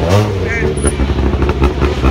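Citroën DS3 WRC rally car's turbocharged four-cylinder engine heard just after it passes, its pitch dropping in the first half-second, then a rapid uneven pulsing as it pulls away down the stage. Spectators' voices mix in.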